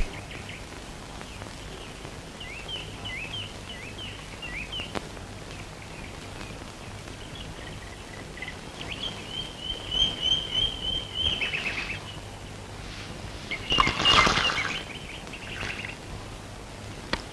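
Small birds chirping: a run of short rising chirps, then a steady trill a few seconds later. A louder, fuller burst sounds near the end.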